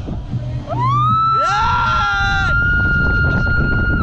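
Giant-swing riders screaming: one long high scream rises about a second in and is held steady to the end, with a second scream overlapping it for about a second, over wind rushing on the microphone.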